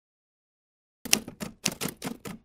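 Typewriter key clacks as a sound effect: silence for about the first second, then a quick run of keystrokes in uneven clusters.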